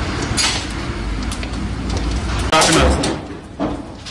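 On-scene sound of a building fire: people's voices amid scattered sharp cracks and knocks over a low rumble, with one louder noisy burst about two and a half seconds in.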